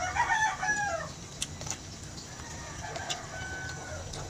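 A chicken clucking: one loud call in the first second, falling in pitch at its end, then a fainter call about two seconds later.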